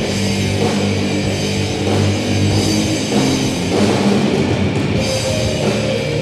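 Live heavy metal band playing an instrumental passage: two electric guitars, bass guitar and a Yamaha drum kit, loud and steady with no vocals.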